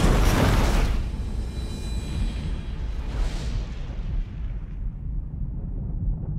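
Movie-trailer sound design: a deep boom at the start that decays into a long low rumble, with a brief whoosh about three seconds in and faint music fading underneath.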